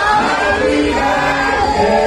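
A group of people singing together loudly, several voices holding drawn-out notes at once.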